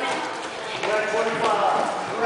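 Spectators' voices echoing in a gymnasium, with a few knocks on the hardwood court floor.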